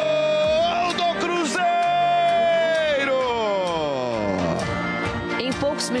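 A football commentator's drawn-out goal call: one long, steady, high held note that breaks briefly about a second in, picks up again, then slides down in pitch over the next two seconds.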